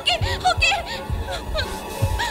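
A woman sobbing and whimpering in a run of short, broken cries, over a tense film score with a low pulsing beat.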